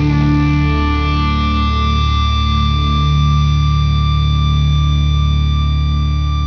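Doom-metal music: a distorted electric guitar chord with effects, held and ringing steadily with no drums.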